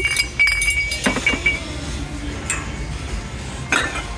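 Ceramic mugs clinking against each other as they are picked up and moved on a crowded shelf: a quick run of knocks with a short ringing note at first, then a few scattered clinks.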